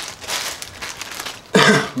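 A man coughs once, a short throaty cough about one and a half seconds in, after a second or so of soft hissy noise.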